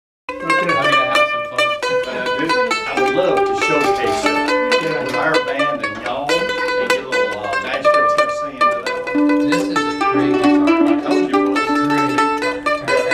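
F-style acoustic mandolin picking a melody in a string-band jam, with other acoustic string instruments playing along.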